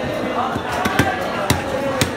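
Knife chopping into a large tripletail fish on a wooden chopping block: two sharp knocks about half a second apart near the middle, with lighter taps just before them, over steady market voices.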